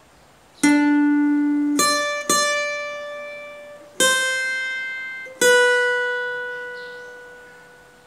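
Cutaway acoustic guitar playing a slow solo phrase of single picked notes: five notes, each left to ring, the last one sustaining and fading away near the end.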